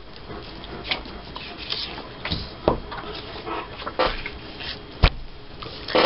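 Pet dogs talking softly in the room, with quiet whines and grumbles. Under them is the sound of paper being handled and light knocks on a desk, the sharpest about five seconds in.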